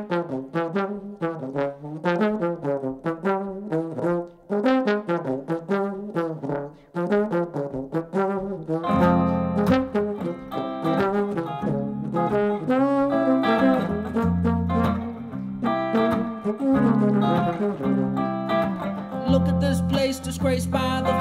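Trombone playing a quick melodic line of short notes to open the song; about nine seconds in, a hollow-body electric guitar comes in with chords underneath.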